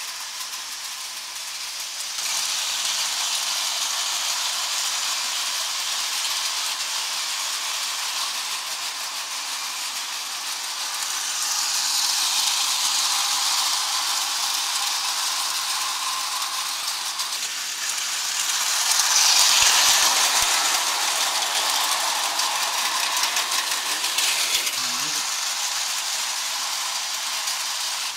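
Hornby O gauge tinplate model trains running on tinplate track: a steady metallic rattle and whirr of wheels on the rails, growing louder twice as trains pass close by.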